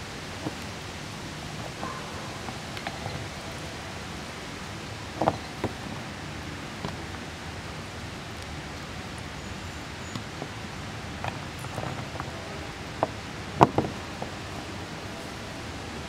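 Wet rough gem silica chrysocolla chunks being handled and set down on a wooden board: a few light clicks and knocks, two close together about five seconds in and a small cluster near the end, over a steady background hiss.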